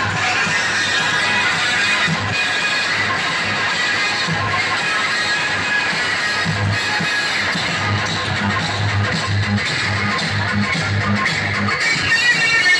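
Loud dance music blasting from towering stacks of DJ loudspeaker cabinets, with a pulsing bass beat that grows more regular in the second half.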